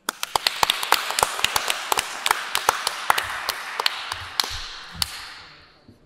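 Audience applauding, with single sharp claps standing out from the general clapping. The applause dies away near the end.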